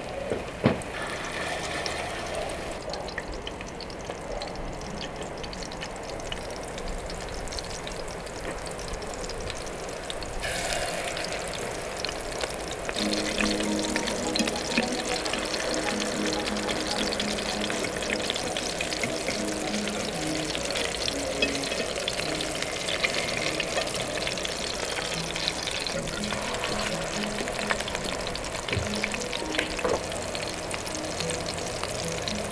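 Minced beef cutlets frying in hot oil in a pan, a steady sizzle with fine crackling that grows louder about ten seconds in. Background music plays underneath.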